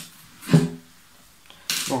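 A man's voice: a short pitched murmur about half a second in, then a breathy hiss and the spoken word 'bon' at the very end, with quiet room tone between.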